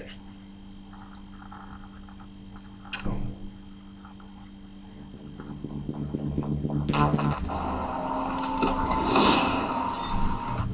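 A low steady hum for the first half, with one brief sound about three seconds in. A film soundtrack then starts playing from the media player about halfway through and grows louder.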